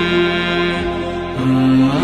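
Wordless hummed vocal interlude of a nasheed: layered voices holding long notes, dropping to a lower note about one and a half seconds in.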